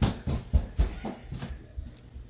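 Irregular soft knocks and thumps, about three or four a second, with a sharper click at the start.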